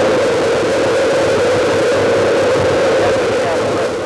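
Space Shuttle Columbia's main engines and solid rocket boosters firing at liftoff: a loud, steady rocket noise with a dense hiss and no breaks.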